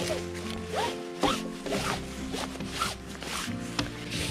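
Synthetic fabric of a folding camp cot being pulled and spread out, rustling and swishing in a series of quick strokes, over steady background music.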